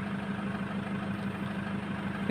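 Toyota HiAce van engine idling with a steady low hum.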